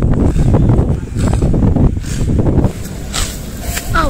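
Wind buffeting the microphone outdoors, a loud uneven low rumble, easing off and giving way to a brief hiss about three seconds in.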